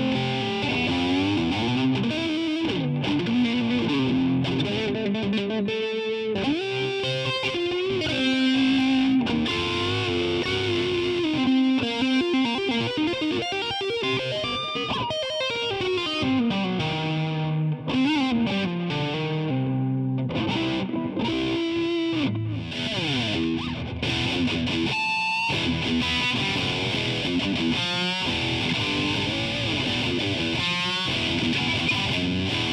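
Fender Telecaster played through a Roland Micro Cube GX set to its R-fier Stack (high-gain rectifier stack) amp model with delay: distorted single-note lead lines with bends and slides.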